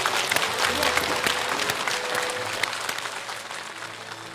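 Studio audience applauding, many hands clapping together, the applause slowly fading away.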